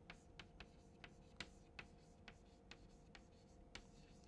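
Chalk writing a word on a chalkboard: faint, sharp taps of the chalk on the board, about two or three a second, over a faint steady hum.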